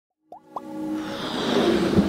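Logo-intro sound effects: two quick pops rising in pitch, then a swell of noise that grows steadily louder, leading into the intro music.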